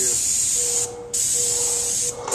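Paint spray gun hissing loudly as it sprays, cut off for a moment just before a second in as the trigger is released, then spraying again.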